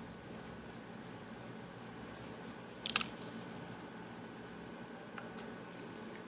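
Quiet room tone with a low, steady hum. One brief, soft, hissy noise comes about three seconds in, and a faint click about five seconds in.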